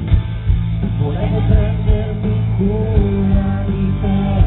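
Live pop-rock band playing through a PA, heard from the audience: a steady beat of drums and bass under a wavering melody line.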